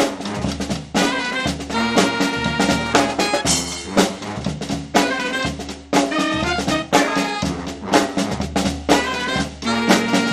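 Live brass band playing: trumpet and saxophone lines over snare drum, cymbals and a sousaphone bass. Strong accented drum hits fall about once a second.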